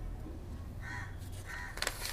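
Two short calls from a bird in the background, about half a second apart, over a low steady hum, with a few sharp clicks near the end.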